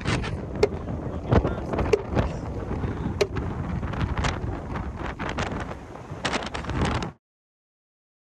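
Strong wind buffeting the microphone at a windy shoreline, with a series of short, sharp knocks and clicks through it. The sound cuts off suddenly about seven seconds in.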